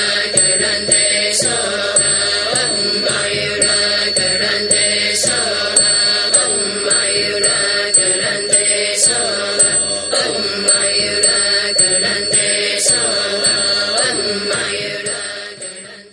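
Buddhist mantra chanting over a music backing, with light percussion strikes at a regular beat. It fades out near the end.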